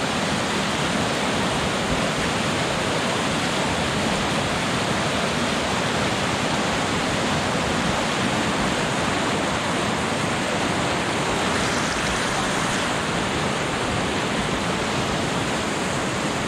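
Whitewater river rapids rushing, a steady, unbroken wash of water noise.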